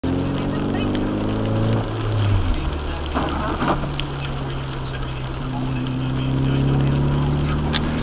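Vehicle engine running while driving on a rain-wet road, heard from inside the cab, with a steady hiss from the tyres on wet pavement. The engine note shifts about two seconds in, then rises slowly as the vehicle picks up speed.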